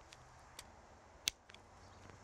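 Hand cutters snipping through a PVC roofing accessory (universal outside corner): a few faint clicks and one sharper click about a second and a quarter in as the blades close through the membrane.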